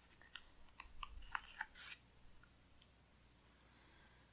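Faint crinkling and small clicks of paper as a planner sticker is peeled from its backing sheet, mostly in the first two seconds, with one last click near the end.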